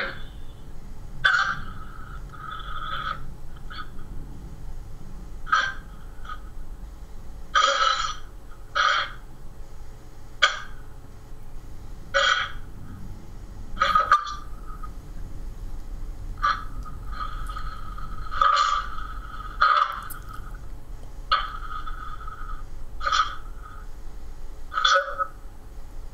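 Ghost box (spirit box) scanning through radio frequencies: short, choppy bursts of radio static and snippets every second or two, with a longer run of sound about two-thirds of the way through.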